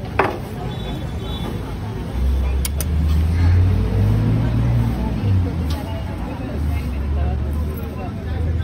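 Low, steady rumble of a nearby motor vehicle engine in street traffic, swelling about two seconds in, with indistinct voices under it and a sharp click right at the start.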